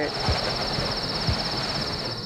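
Cricket-like insect trill: a high, fast-pulsing chirr over a steady hiss. Under it, a low beat falls about once a second from the background music.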